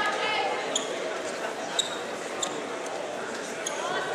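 Large echoing gym with scattered voices, broken by short sharp squeaks and knocks from wrestlers' shoes and bodies on the mat.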